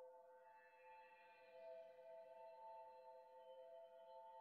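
Faint electronic music intro: a sustained synth chord of three steady tones, with fainter high tones fading in above it about half a second in.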